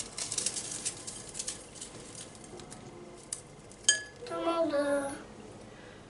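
Dry petit-beur biscuits being crumbled by hand in a glass bowl: a run of small crackles and crunches, then a single sharp clink of glass a little before the four-second mark.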